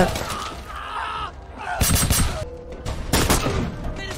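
Film battle-scene gunfire: a cluster of rapid shots about two seconds in and another about three seconds in, with a man's voice in the first second.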